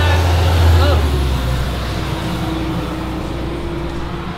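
A motor vehicle going by on the road: a deep rumble that dies away about a second in, leaving a fainter, steady drone.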